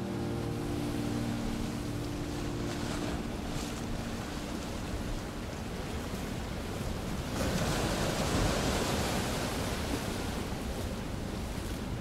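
The last held notes of the music fade out in the first few seconds, leaving a steady rushing noise like surf or wind that swells louder about seven seconds in.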